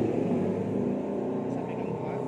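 A steady low hum, like a motor vehicle's engine running nearby, under a man's voice.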